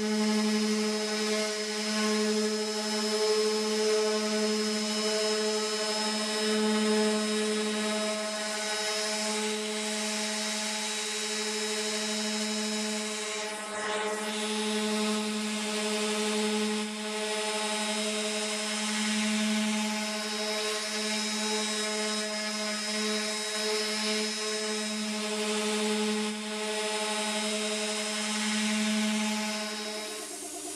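Random orbital sander running steadily against bare sheet steel, a constant motor hum with a brief dip about halfway through.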